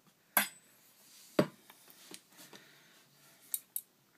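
Two sharp clicks about a second apart, then two faint ticks near the end: small hard objects knocking together as feeding gear and the enclosure are handled.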